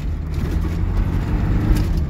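Cabin sound of an off-road Polonez on an Isuzu Trooper chassis driving over a rough dirt track: the engine runs steadily under a low rumble of tyres and body.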